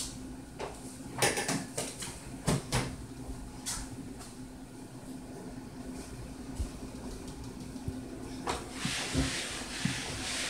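Scattered knocks and clatters of small objects being handled or set down, clustered in the first few seconds, then a rustle near the end, over a steady low hum.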